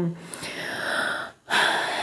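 A woman's breath drawn in between phrases, then a breathy hesitation sound, 'eh', about one and a half seconds in.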